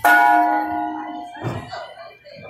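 A metal bell struck once, several tones ringing out together and fading over about a second. A low thud follows about one and a half seconds in.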